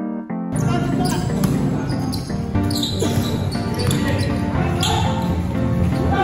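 A short stretch of keyboard music, then from about half a second in the sound of a basketball game on a hard court: a ball bouncing, players' voices and high squeaks, with music still going underneath.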